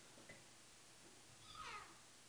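Near silence: room tone, with one faint short sound falling in pitch near the end.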